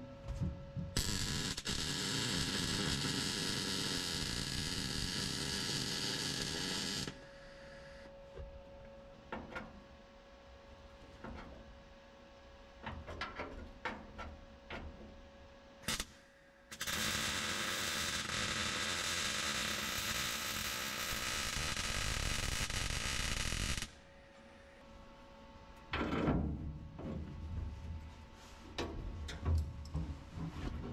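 MIG welder stitch-welding a thin sheet-steel floor reinforcement plate: two long runs of steady welding noise, about six and seven seconds long, with short clicks and brief bursts between them and near the end.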